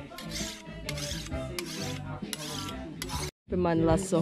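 Machete blade being sharpened with a file: repeated rasping strokes of metal on metal, about two a second. The strokes cut off suddenly a little after three seconds.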